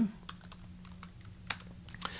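Typing on a computer keyboard: several separate, fairly soft keystrokes spread through the two seconds.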